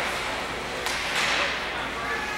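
Indoor ice hockey rink during play: skates and sticks on the ice under a murmur of distant voices, with a short scraping burst about a second in.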